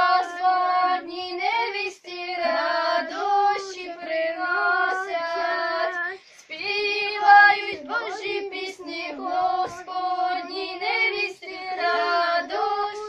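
Group of children singing a Ukrainian Christmas carol (koliadka) unaccompanied, with short breaks for breath between phrases about two and six seconds in.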